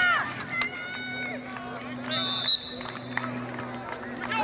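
Spectators shouting at a football play, then a short, high referee's whistle blast a little past halfway, blowing the play dead after the tackle.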